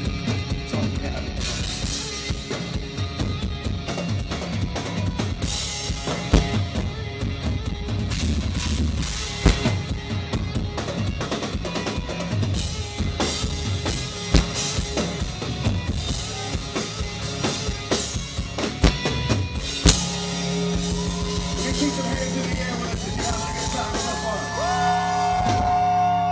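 A live rock band playing loud, with the drum kit to the fore: a driving beat of bass drum, snare and cymbals. About twenty seconds in, the drumming thins and a held low note comes in, with sliding higher notes over it.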